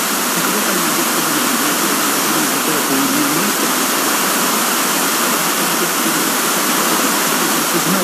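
Heavy FM receiver static from a weak, fading broadcast signal picked up with an RTL-SDR dongle: steady hiss with a faint voice buried underneath. The distant station's signal has faded almost below the noise.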